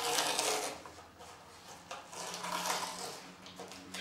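Light-tack transfer paper being peeled back off a paint-mask film by hand, a papery rustling peel in two short spells, one at the start and another about two seconds in.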